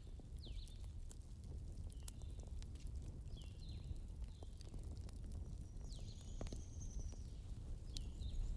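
Wood fire in a fireplace crackling faintly, with scattered sharp pops over a steady low rumble. Short high chirps recur about once a second.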